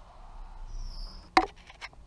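Handling noise: a sharp click a little past the middle and a fainter click near the end, over faint hiss.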